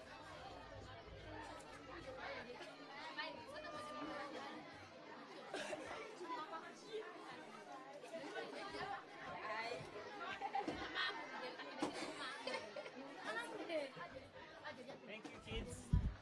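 Low background chatter of many children's voices talking over one another, with no single clear speaker.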